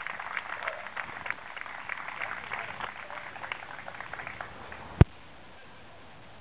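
Scattered applause from a small crowd, many separate claps thinning out over about four seconds. A single loud click comes about five seconds in, after which only a steady hiss remains.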